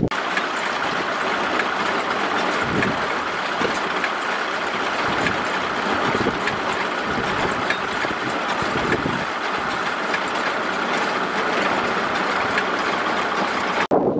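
Tractor-driven small round straw baler running, its engine and chain drives making a steady mechanical clatter with faint regular ticking.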